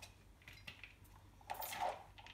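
A kitchen knife chopping bean sprouts on a cutting board: a few light, irregular taps of the blade on the board, with a louder chop near the end.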